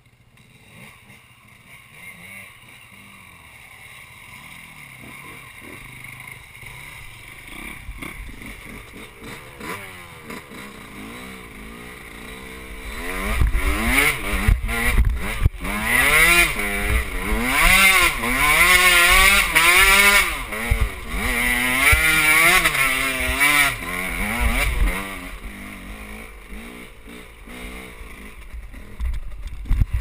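KTM enduro dirt bike engine, faint at first and building slowly. It then revs hard for about ten seconds, its pitch climbing and dropping again and again with the throttle as it works up a slope, and dies back down. A few knocks come right at the end.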